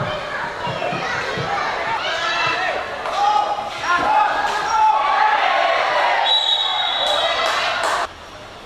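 Young footballers and onlookers shouting and calling out across the pitch, with dull thuds of a football being kicked. Around six seconds in, a steady, held whistle blast, a referee's whistle.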